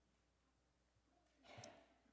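Near silence: room tone, with one faint, brief sound about one and a half seconds in.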